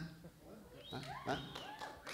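Mostly a quiet pause, then faint voices from about a second in: a man's teasing "huh? huh?" with some soft vocal reactions around it.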